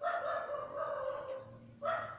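A drawn-out animal call in the background, lasting over a second, followed near the end by a shorter call that rises in pitch.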